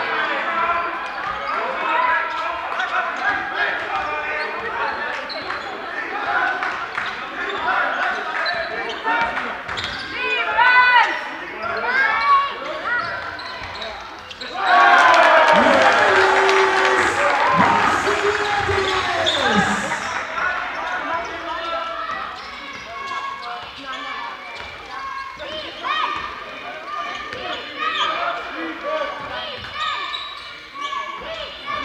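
Basketball game in a gym hall: the ball bouncing on the wooden floor amid players' and spectators' shouts echoing in the hall. About fifteen seconds in, a sudden loud burst of crowd cheering and shouting lasts about five seconds before dying back down.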